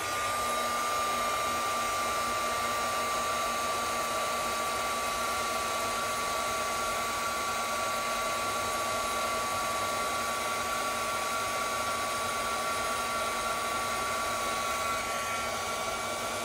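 Handheld craft heat-embossing tool running steadily: a fan hiss with a thin, steady whine. It is blowing hot air to melt gold embossing powder on a stamped sentiment.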